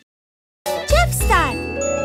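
Dead silence for about half a second, then a bright children's-show music sting with chimes and a quick pitch glide starts, as the show's logo card opens a new episode.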